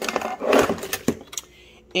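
Rummaging through a kitchen drawer: utensils and a corded hand mixer rustle and clatter as the mixer is pulled out, with a few light clicks. It goes quieter near the end.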